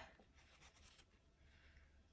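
Near silence, with a faint rustle of craft paper being slid into position by hand against a planner's cover.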